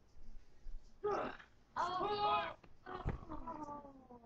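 Wordless roaring yells from a child during play wrestling: three loud cries, the last one sliding down in pitch, with a thump about three seconds in.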